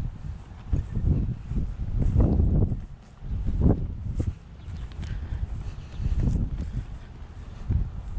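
Wind buffeting the microphone in gusts, a low rumble that swells and drops, with irregular footsteps as the camera operator walks.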